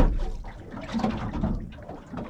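A sharp click at the start, then low wet sounds as a snapper's swollen swim bladder, come up behind its fin from being hauled up from depth, is pressed to let the air out.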